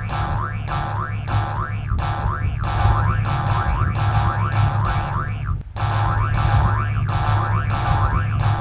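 Springy cartoon 'boing' sound effects repeating about twice a second over background music with a steady bass line. The sound cuts out briefly about three-quarters of the way through.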